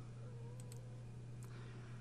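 Faint computer mouse clicks: a quick press-and-release about two-thirds of a second in, and a lighter tick later, over a low steady hum.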